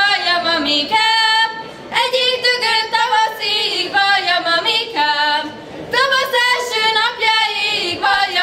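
Unaccompanied Hungarian folk song sung by young girls' voices together on one melodic line, in short phrases with breath breaks, several of them falling in pitch.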